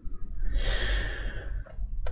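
A person's breath close to the microphone: one soft, hissy breath about a second long, starting about half a second in and fading away.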